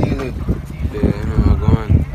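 A person's voice, drawn out in long, pitch-bending tones, over low thumps.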